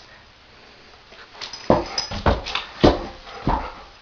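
German shepherd dog giving four short, sharp barks, roughly half a second to a second apart, beginning a little under two seconds in after a quiet start.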